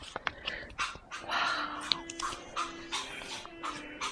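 Polymer banknotes being flexed and handled, giving irregular crinkly crackles and rustles, with faint background music underneath.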